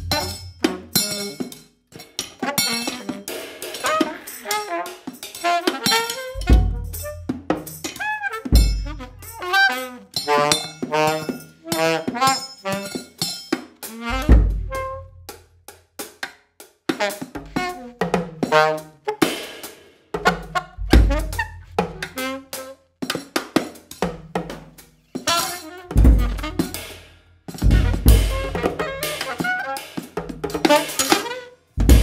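Freely improvised alto saxophone and drum kit duet: short, broken saxophone phrases over scattered drum and cymbal strikes, with about half a dozen deep low thumps.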